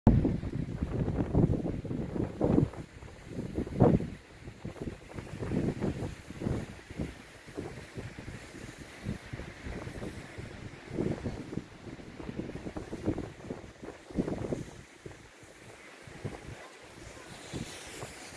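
Wind buffeting the microphone in irregular gusts of low rumble, strongest in the first few seconds and dying down near the end.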